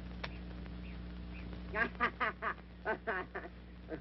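A quick run of about seven short quacking calls, starting a little under two seconds in, over the steady low hum of an old film soundtrack; a single click comes just after the start.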